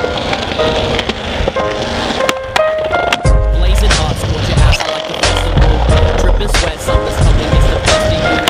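A music track with held tones and a deep bass line coming in about three seconds in, laid over skateboard sounds: urethane wheels rolling on concrete and sharp clacks of the board.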